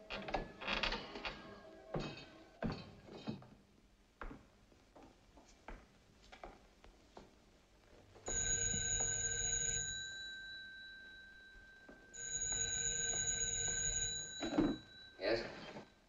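A 1940s dial desk telephone's bell ringing: two rings about four seconds apart. A short loud sound follows near the end as the phone is answered.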